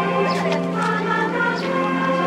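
A group of voices singing in chorus, holding long, steady notes over a low sustained note.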